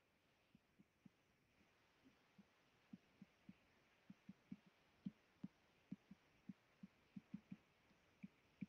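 Faint, soft taps of a stylus on a tablet screen while handwriting. They come sparsely at first, then two to four a second from about three seconds in.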